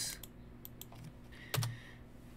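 Computer keyboard keystrokes: a few light key clicks, then a single louder keystroke about one and a half seconds in.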